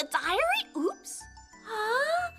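Animated characters' voices over light, jingly children's background music with a repeating bass note.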